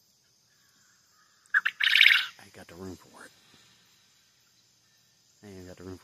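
A loud, sharp bird call lasting under a second, about one and a half seconds in, over a faint steady insect buzz.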